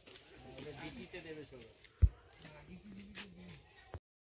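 Insects droning steadily at one high pitch in the background. A single sharp low thump about halfway through.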